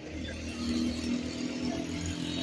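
A motor vehicle engine running on the street, a steady low hum that grows a little louder about half a second in, over traffic noise.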